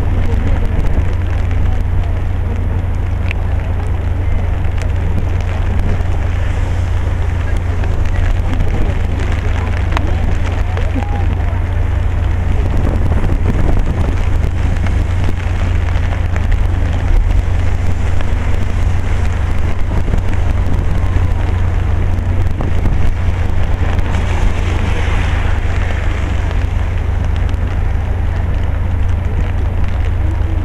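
Steady rain noise outdoors: an even hiss of falling rain over a constant deep rumble, as of wind on the microphone or distant traffic.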